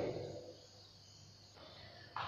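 Faint steady background hiss of a room, with a man's voice trailing off at the start.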